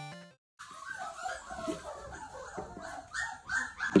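A short game-style music jingle cuts off, then after a brief silence several wolfdog puppies whimper and yelp, with many short high cries overlapping.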